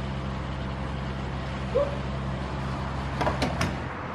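Fuel pump's motor humming steadily, then a quick series of clicks and knocks about three seconds in as the nozzle is pulled from the filler and hung back on the pump. The hum stops near the end as the nozzle is hung up.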